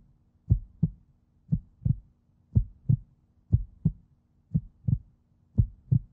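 Heartbeat sound effect: a double thump (lub-dub) about once a second over a faint steady hum, used as a suspense cue during the countdown to the button decision.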